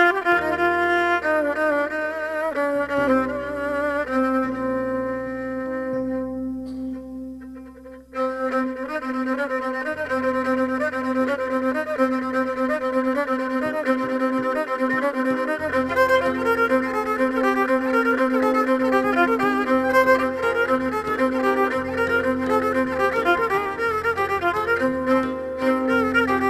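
Kabak kemane, a gourd-bodied bowed spike fiddle, playing a folk tune over a steady drone string, with low held accompaniment notes beneath. The playing thins out and quietens about six to eight seconds in, then comes back fuller.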